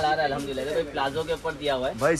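A man's voice talking, the words not made out; only speech is heard.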